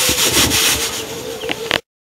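Small knife scraping and cutting a raw vegetable by hand, a rough scraping rasp that is strongest in the first second and cuts off abruptly near the end.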